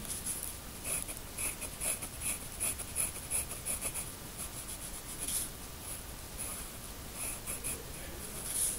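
Pencil scratching on drawing paper in quick back-and-forth shading strokes, a few a second, as a small patch is filled in dark.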